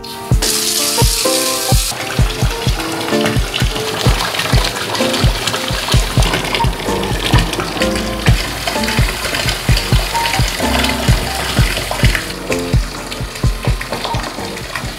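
Water gushing from a bathtub filler spout into a filling tub, starting about half a second in and loudest for the first second and a half, then running on steadily. Background music with a steady beat plays over it.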